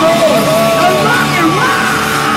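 A live rock band playing loud, with a lead line on a Gibson Les Paul electric guitar bending and sliding in pitch over the band.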